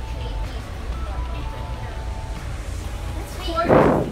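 Low, steady rumble of a bus heard from inside the cabin, with faint voices and music in the background. A brief loud voice-like cry comes near the end.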